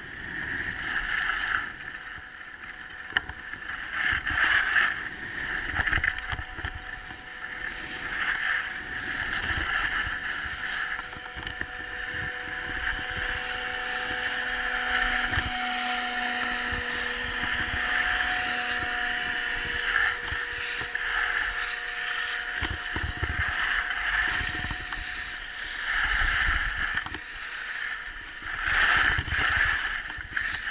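Skis hissing and scraping over packed snow, swelling and easing with each turn, with wind noise on the microphone.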